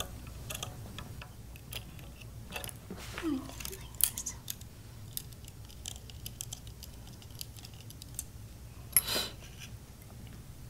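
Scattered small clicks and taps of hands working a small electronics module with a mini screwdriver and tiny screws on a bench mat. A sharper click comes about four seconds in, and a short, louder clatter near the end.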